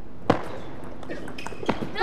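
Table tennis ball clicking off the bats and table: one sharp click about a third of a second in, then a few quick clicks near the end as a rally starts.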